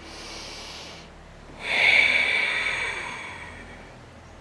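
A woman breathing audibly: a soft breath, then about a second and a half in a louder, longer breath that slowly fades.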